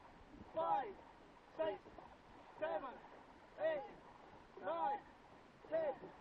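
A man's voice calling out short counts about once a second, keeping time for the paddle strokes, over faint water and wind noise.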